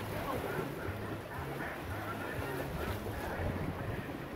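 Steady ambience aboard an open water-ride boat: the wash of water and wind on the microphone over a low, uneven hum.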